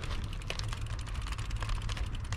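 Brompton folding bike's tyres rolling across the planks of a wooden footbridge, setting off a quick, dense clatter of small clicks over a low rumble.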